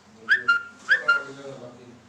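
A short two-note whistle, a quick rising note followed by a held lower one, sounded twice in a row.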